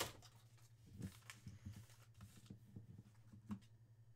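Faint handling of a small stack of trading cards: a few soft taps and rustles as the cards are moved and set down on the mat, over a steady low hum.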